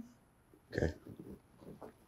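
A woman's short, strained grunts of effort and pain as she gets up, twice after a spoken "okay".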